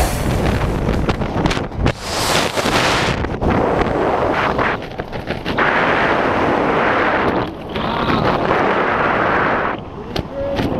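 Wind rushing over the camera microphone under an open tandem parachute canopy, a rough noise that surges and dips several times.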